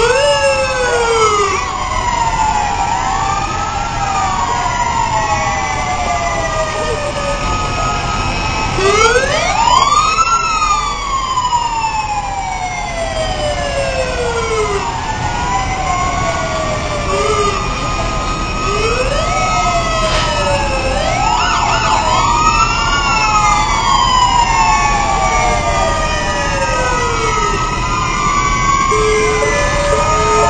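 Several fire engine and ambulance sirens wailing at once, their rising and falling pitches overlapping, over the low rumble of the trucks going by. Near the end a two-tone alternating siren joins in.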